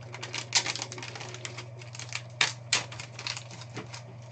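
Foil trading-card pack wrapper crinkling and crackling as hands handle it, with a run of sharp crackles, the loudest about half a second in and twice a little past the middle. A steady low hum runs underneath.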